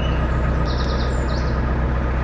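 Narrowboat engine running steadily, a low even drone, with a few birds chirping over it about a second in.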